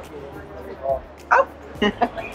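A woman's short startled exclamations, the loudest a sharp 'Oh!' about halfway through, with a second quick cry just after, over music in the background.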